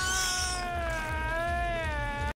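A long, high-pitched squeaky fart sound effect, drawn out with a slight waver in pitch, over a low rumble.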